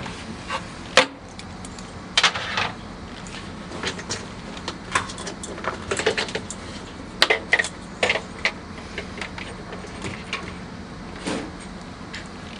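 Irregular clicks, taps and knocks of small plastic parts being handled as the ice machine's float switches, their rubber grommets and wire leads are pulled out and unplugged, with a sharp knock about a second in. A steady low hum runs underneath.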